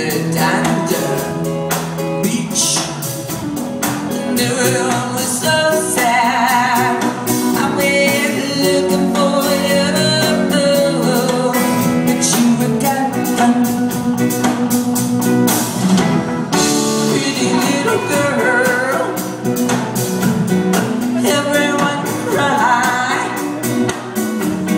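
Live rock band playing: electric guitars, bass and drums under a woman's lead vocal, with sung lines coming and going over a steady beat, heard from within the audience.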